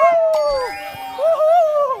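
Voices letting out long, drawn-out 'ooh' cries in reaction to an exam result, gliding up and down in pitch: one at the start, fading, then a second swelling about halfway through and trailing off near the end.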